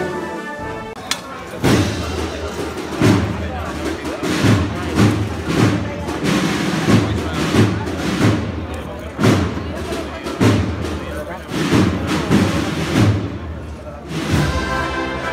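A marching band's drum section, led by a bass drum, beats a steady processional rhythm of about three strokes every two seconds, with the wind instruments silent. A crowd's voices run underneath.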